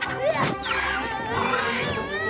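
Animated-film soundtrack: background music with a child shouting and a long, wavering creature cry from the giant cartoon bird.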